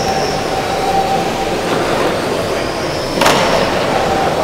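Several GT12-class 1/12-scale electric RC cars running laps on a carpet track: a steady whine of motors over tyre noise, with a sharp knock about three seconds in.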